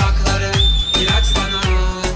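Arabic pop dance remix playing loud with a steady heavy beat. About half a second in, a high whistle-like tone is held for about a second, then slides down and stops.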